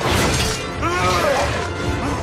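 Film battle soundtrack: orchestral music with a sudden crash right at the start and a shouted, falling cry about a second in.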